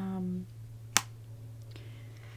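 A woman's drawn-out "um", then about a second in a single sharp click, over a low steady hum.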